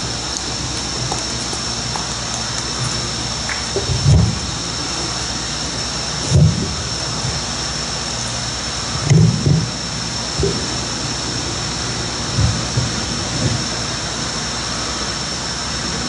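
Steady open-air background hiss with a faint high whine, broken by several short low thuds and rumbles on the podium microphone as people move at the lectern.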